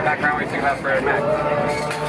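Several people's voices overlapping, one of them drawn out into a long held tone in the second half.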